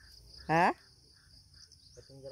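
Insects chirping steadily in a high, rapidly pulsing trill. About half a second in, a person's short voiced "ha" with falling pitch stands out as the loudest sound.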